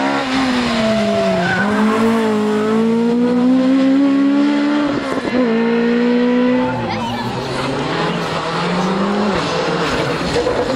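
A Ford Escort Mk1 rally car's engine comes off the throttle with falling revs, then pulls hard, rising through the revs. About five seconds in, the revs dip briefly at a gear change, then climb again. After another drop a couple of seconds later, it runs lower and steadier as the car pulls away.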